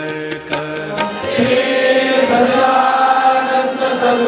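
Hindu devotional temple music: drum strokes over a held tone for about the first second, then voices chanting in long, held notes, louder.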